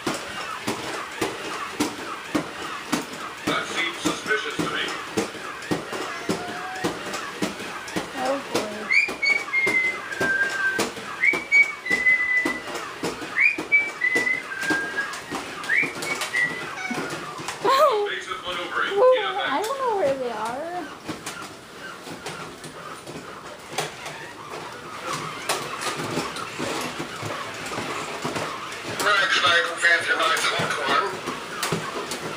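Walking toy robot's motors and feet clicking on a hard floor in a steady, quick run of ticks. In the middle there is a series of short whistle-like chirps, followed shortly by a wavering, gliding sound.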